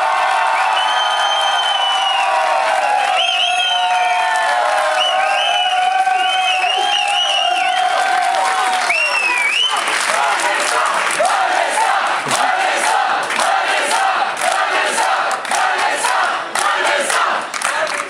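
A large crowd cheering and shouting, with long held yells for the first half, then clapping mixed with cheers.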